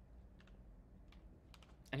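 A few faint, scattered clicks of keyboard keys over a low, steady room hum.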